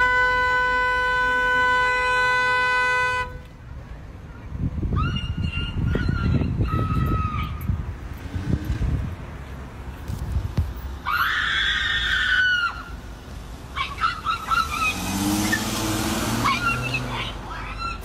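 A car horn held steadily for about three seconds, then a woman screaming in several separate outbursts.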